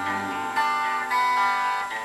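A guitar playing alone, slow notes left to ring, with new notes struck about half a second and about a second in.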